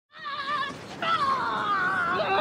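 Two high-pitched, wavering cries from a boy. The first is short; the second starts about a second in and is long and drawn out, dipping and then rising in pitch.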